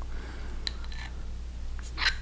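A few faint clicks of a metal spoon against a ceramic mug as cake is scooped out, over a low steady hum.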